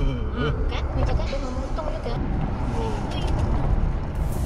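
Steady road and engine rumble inside a moving car, with a person's voice heard in short snatches over it.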